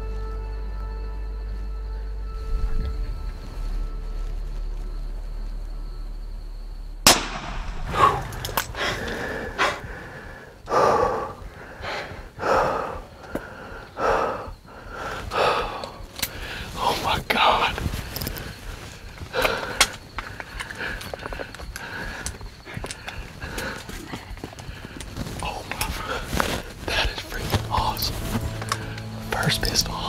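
A single sharp, loud shot from a Smith & Wesson Performance Center 460 XVR revolver about seven seconds in, over soft held music notes. Afterwards come hushed, excited voices and breathing.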